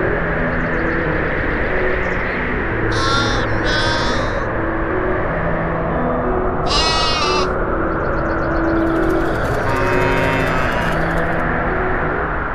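Sheep bleating: two short bleats about three seconds in, another near seven seconds, and a longer wavering one around ten seconds, over background music and a steady hiss.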